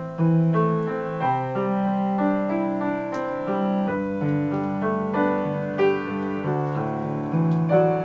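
Grand piano playing alone: chords changing about once a second over held low bass notes.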